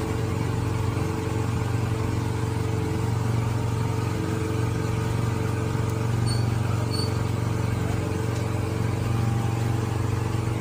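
Steady mechanical drone with a deep hum and a few steady tones above it, like a running engine or motor. Two short high beeps sound about six and seven seconds in.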